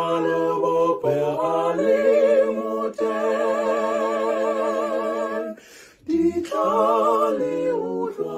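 A single voice singing unaccompanied, heard over a video call, holding long notes with vibrato. The line breaks off briefly about five and a half seconds in, then the singing resumes.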